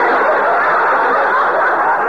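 Studio audience laughing together after a joke, a steady crowd laugh. It sounds thin and muffled through an old radio recording that carries nothing above the mid-range.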